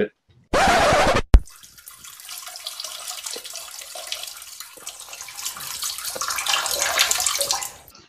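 Handling noise close to a microphone as things are picked up and moved: a brief loud rustle, a sharp knock, then a crackling rustle that grows louder toward the end.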